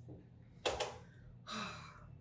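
A woman's breathing close to the microphone: two short, breathy gasps, a sharp one about two-thirds of a second in and a softer, slightly voiced one near the end.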